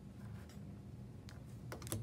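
Light clicks and taps of hands handling a popsicle-stick and plastic-spoon catapult on a wooden desk, with a quick cluster of sharper clicks near the end, over a low steady hum.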